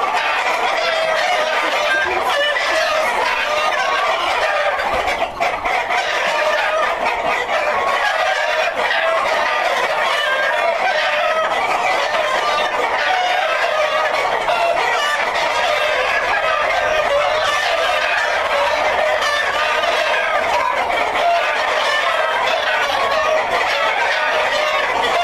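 A large flock of Black Jersey Giant chickens, hens and roosters together, clucking and calling in a dense, steady chorus.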